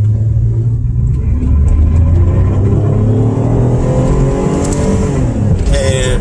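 Car engine heard from inside the cabin while driving. Its note climbs steadily as the car accelerates, then eases off near the end.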